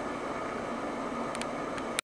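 Steady background hiss of indoor room tone, with two faint clicks about a second and a half in and a sharper click right at the end as the recording stops.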